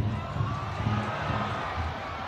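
Football stadium crowd: a steady background din of supporters in the stands.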